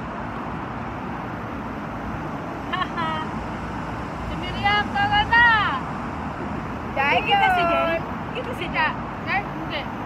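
Steady hum of city traffic, with people's voices breaking in over it in short bursts a few times.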